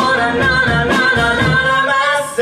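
Live musical theatre song: a sung voice holding notes over instrumental accompaniment with a regular pulse.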